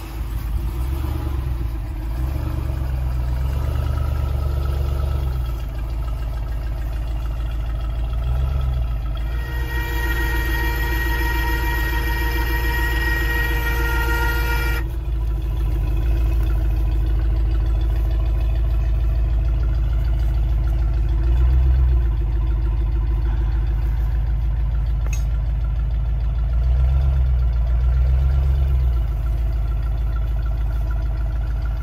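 Ram pickup truck's engine running at low speed as the truck creeps backward, a steady low rumble. For about five seconds in the middle, a steady high-pitched tone sounds over it and then stops suddenly.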